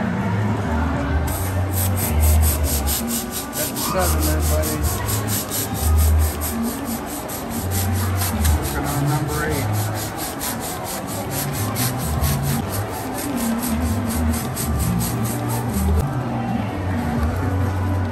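Hand-held plastic balloon pump worked rapidly to inflate a foil balloon: an even, fast rhythm of airy hissing strokes, about four a second. It starts about a second in and stops near the end.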